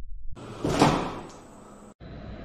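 A single heavy thud from a cardboard box striking the arms of a dual-arm robot as they catch it, coming about a second in and dying away over about a second.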